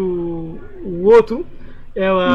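A man's voice: one long held vowel, then a short syllable about a second in.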